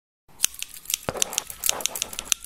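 A quick, irregular run of sharp clicks and snips, about six a second, starting about a quarter second in: a sound effect laid over an animated logo intro.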